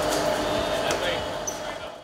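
Several people talking over one another, with a few light knocks, fading out at the very end.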